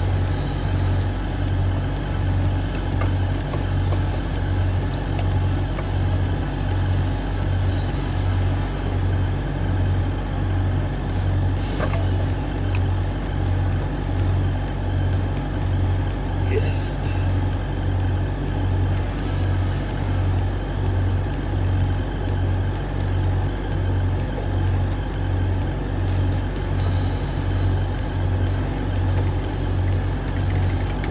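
A steady low mechanical hum that throbs evenly, a little faster than once a second, with a few faint metallic clicks.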